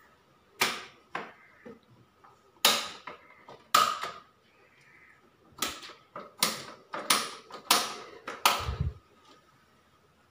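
Sharp clicks and knocks from hands working on the miniature circuit breakers and casing of an electrical distribution board, about ten of them at irregular spacing, each ringing briefly; the one near the end carries a deeper thump.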